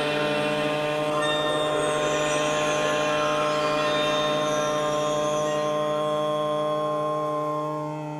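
Background music of steady, sustained held tones like a drone or pad, fading slightly near the end.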